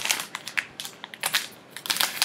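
Soft plastic pack of Dude Wipes crinkling and rustling as it is picked up and handled, in a run of short, irregular crackles.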